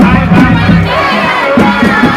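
A crowd shouting and cheering over loud music with repeated drum strokes.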